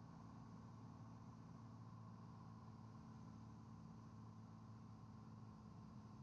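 Near silence: a faint, steady drone of the light aircraft's piston engine, heard low through the cockpit intercom.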